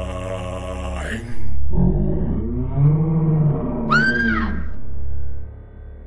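A man's voice holding one long drawn-out note, then a louder, deeper wavering vocal sound with a quick rising-and-falling whoop about four seconds in, over a steady low drone. It stops about a second before the end.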